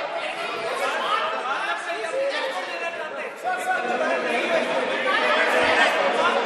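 Many voices talking and calling out over one another in a large chamber: an uproar among members of parliament, with no single speaker holding the floor.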